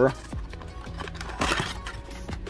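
Cardboard trading-card box being opened by hand: a few light clicks, then a short scraping tear of the cardboard flap about one and a half seconds in.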